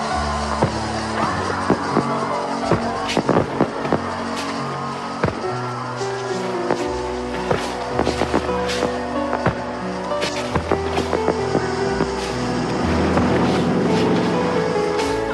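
Music playing over a fireworks display, with many sharp pops and crackles of fireworks going off throughout, thickest about three to four seconds in and again around eight to nine seconds.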